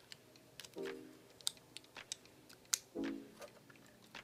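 Soft background music, a pitched note sounding about every two seconds, with a few light clicks and taps from small circuit boards being handled.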